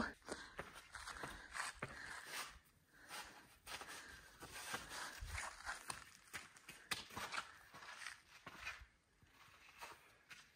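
Faint, irregular footsteps and shoe scuffs on sandstone slickrock as a person climbs a steep rock slope.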